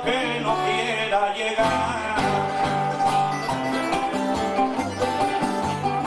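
Cuban punto guajiro accompaniment: a laúd and an acoustic guitar playing a plucked-string instrumental interlude, with the guitar's bass notes under the laúd's melody.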